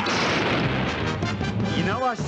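Explosion sound effects for pyrotechnic missile blasts, a loud dense blast noise that thins out near the end, with music under it.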